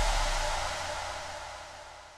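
Fading outro of an electronic dance remix: a wide hissing noise wash dies steadily away after the heavy bass drops out, as the track ends.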